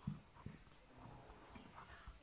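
Faint scratching of a ballpoint pen writing on paper, with a few light clicks of the pen against the sheet.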